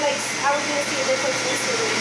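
A woman talking over a steady rushing hiss of air, the cold-air skin cooler blowing during a laser hair-removal treatment.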